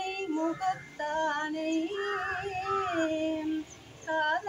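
A woman singing a devotional song solo and unaccompanied, in long held notes that waver and glide in pitch.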